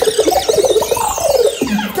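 Synthesizer sound effects blasted over a dancehall sound system with the bass cut out: a rapid, jittery warbling burst and a long falling sweep.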